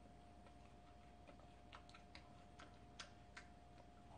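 Near silence: room tone with a faint steady whine, and a string of soft clicks in the second half.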